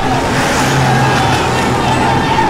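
A convoy of Toyota Land Cruiser SUVs driving past, engines running and tyres on the road, with a steady high tone running under it.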